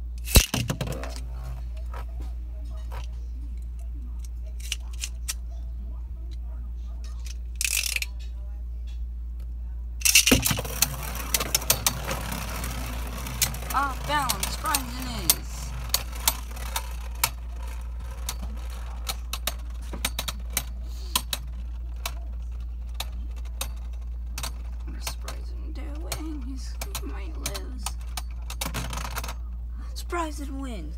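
Two Beyblade Burst spinning tops are launched into a plastic stadium with a sudden whoosh about a third of the way in. They then whir and clack against each other and the stadium walls in many sharp clicks and knocks, which die out just before the end as the tops come to rest.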